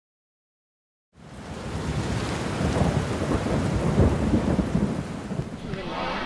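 Heavy rain with a deep rumble of thunder, fading in after about a second of silence and loudest around four seconds in.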